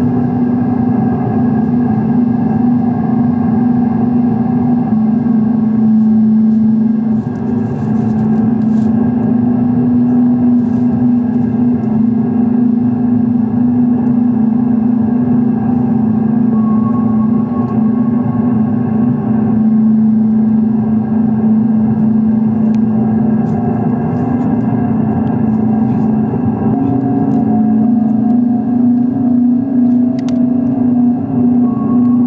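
Loud, steady electronic drone from a keyboard synthesizer run through effects units: a held low tone with layered overtones and a distorted, noisy edge. Short higher tones come and go over it.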